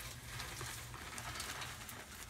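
Dry concrete mix pouring from a paper bag into the drum of a small cement mixer: a steady, even hiss.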